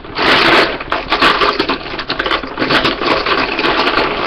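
A loose collection of colouring utensils being rummaged through by hand, a continuous rattle of many small clicks and clatters, loudest just after the start.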